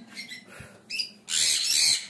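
Sun conure chicks calling in the nest box: a couple of short high calls, then a longer harsh, hissing begging call in the second half.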